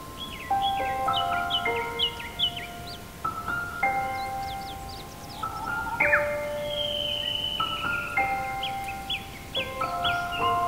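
Solo piano playing slow, bell-like notes high on the keyboard, each struck note held and left to ring. Songbirds chirp behind it in quick short calls, with one longer falling whistle about six seconds in.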